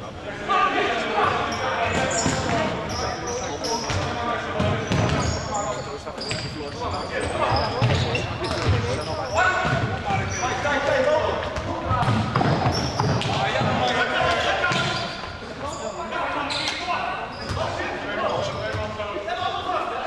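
Futsal being played on a sports-hall floor: the ball is kicked and bounces, trainers squeak, and players call out, all echoing in the large hall.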